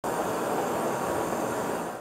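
Handheld kitchen blowtorch flame hissing steadily as it caramelizes the sugar topping of a custard.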